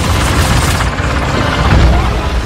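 Loud film battle mix: a deep rumbling din with a fast low pulse and a dense wash of noise on top, swelling near the end, under the orchestral score.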